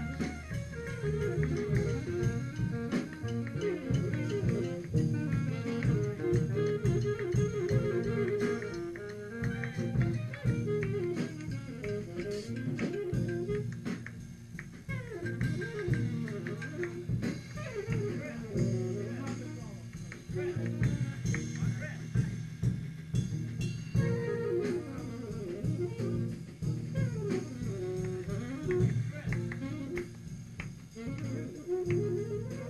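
A big band plays a jazz-funk tune at a rehearsal, heard on an old 1970s tape recording. Saxophones, guitar and a repeating bass line play together, with a thinner passage about halfway through.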